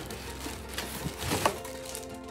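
Rustling and scraping of a cardboard box and plastic wrapping as a drum pad in a plastic bag is lifted out, with a few louder scrapes about a second and a half in.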